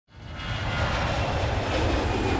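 Jet aircraft engine noise, a steady rumble and rush that fades in from silence over the first half second.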